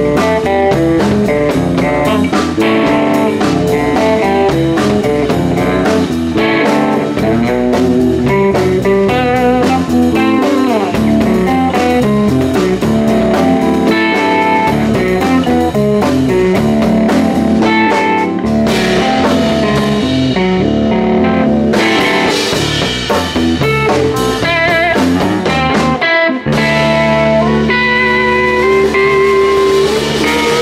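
A live rock trio plays a loud instrumental passage on electric guitar, electric bass and drum kit, with busy guitar lines and some wavering, bent notes. About 26 seconds in the music cuts out for an instant, then a new section of held notes begins.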